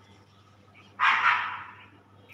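One loud animal call about a second in, starting sharply and fading away within a second.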